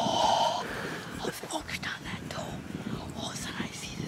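A boy whispering excitedly, with a short burst of noise right at the start.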